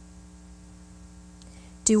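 Steady electrical mains hum in the microphone and sound system, with a faint hiss. A woman's voice starts speaking near the end.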